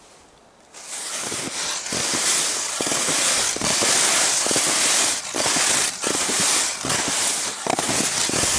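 Footsteps crunching in snow, starting about a second in and going on at a walking pace, each step a sharp crackle over a steady hiss of disturbed snow.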